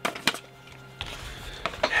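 A few sharp plastic clicks and knocks as a plastic shaker cup is handled and set down, then quieter rustling and handling noise with small knocks from about a second in.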